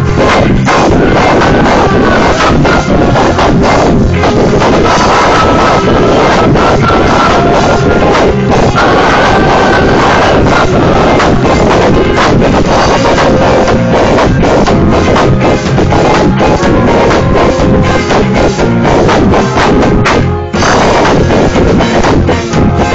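A live band playing loud, dense music, in a poor-quality recording that the uploader calls bad sound. The music dips briefly about twenty seconds in.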